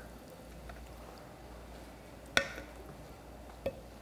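Forks clinking against dinner plates while eating: one sharp clink about two and a half seconds in and a lighter one about a second later, over quiet room tone.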